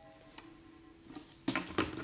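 The last of an acoustic guitar note dying away, followed by a few soft knocks near the end.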